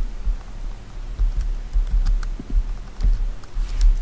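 Typing on a computer keyboard: irregular key clicks with a low thud under many of them, and a louder click right at the end.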